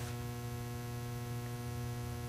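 Steady electrical mains hum: a low buzz with a ladder of evenly spaced higher overtones, holding level and unchanging.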